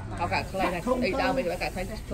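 Speech: a person talking continuously.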